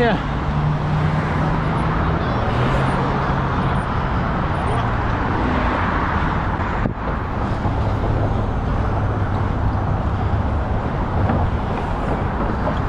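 Steady traffic noise from cars on the Brooklyn Bridge roadway: a constant rush of tyres with a low engine hum. The sound briefly drops out about seven seconds in.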